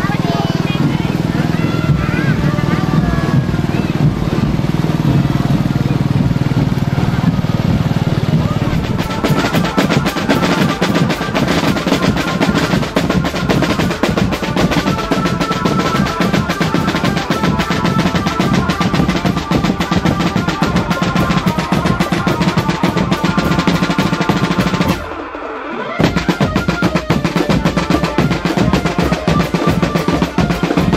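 A marching drum band playing from about 9 seconds in: fast, dense snare and tenor drum strokes and rolls with bass drum, and a melody held over the beat. Before that comes a low, steady rumble mixed with voices. The sound drops out abruptly for about a second near 25 seconds.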